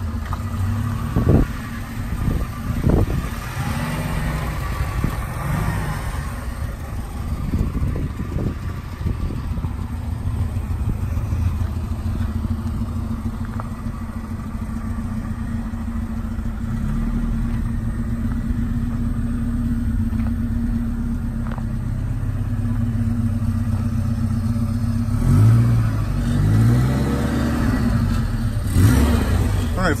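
1983 Alfa Romeo Spider Veloce's 2.0-litre twin-cam four-cylinder engine idling steadily on its own, foot off the gas, as it warms after a cold start.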